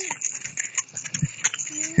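A horse walking slowly: a few soft, irregular hoof falls and small knocks of tack, with a voice starting to speak near the end.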